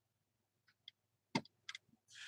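Near silence: room tone with a few soft clicks. The sharpest comes about a second and a half in, followed by two small ones.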